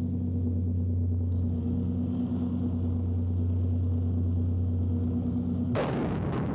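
A steady low hum made of several fixed tones, then near the end a sudden rush of noise as the LOSAT anti-tank missile's rocket motor fires on launch.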